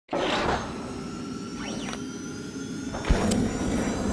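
Electronic intro sound logo: a whoosh at the start, a short rising-then-falling glide over held synthetic tones, then a deep hit about three seconds in followed by another swell.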